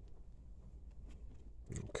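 Faint scuffing of a microfiber towel rubbing polish into a car's painted side panel, over a low steady rumble.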